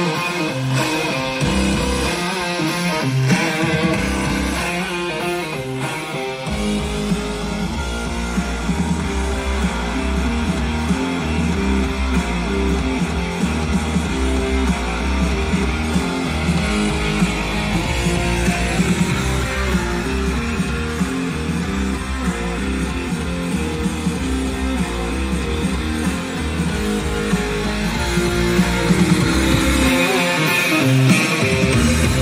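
Music played through a UTV sound system of four roll-bar tower speakers and a subwoofer, led by guitar, with a heavy bass line filling in about six seconds in.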